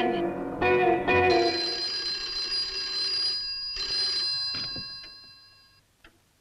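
Film score music for about the first second, then an old telephone bell ringing with steady bell tones that fade out about five seconds in.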